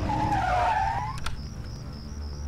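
Car tyres squealing: one wavering squeal that dips and then rises, lasting about a second, followed by two sharp clicks.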